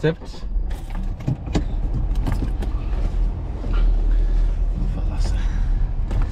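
Car engine idling, heard from inside the cabin as a steady low hum, with a few small clicks and knocks in the first couple of seconds.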